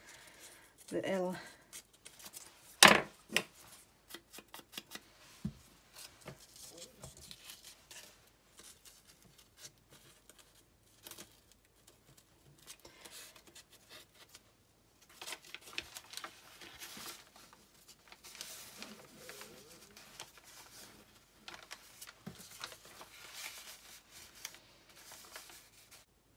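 Paper being handled close up: soft rustling, crinkling and small taps of paper strips in the hands, with one sharp knock about three seconds in.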